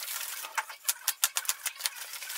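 Plastic wrapping being torn and crinkled by hand: a quick, irregular run of sharp crackles and rips.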